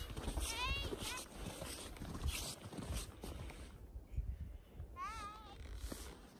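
Footsteps crunching in snow over a low wind rumble on the microphone, with a high, distant voice calling out "hey" near the start and again about five seconds in.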